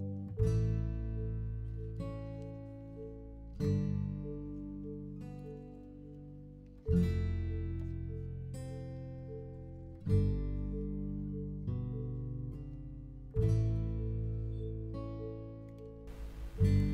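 Background music: acoustic guitar chords, a new chord struck about every three seconds and left to ring out.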